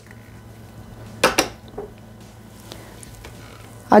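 Plastic Thermomix spatula knocking against the stainless-steel mixing bowl while scraping the blended strawberry and lemon mixture down. There are two sharp knocks close together about a second in, then a fainter one.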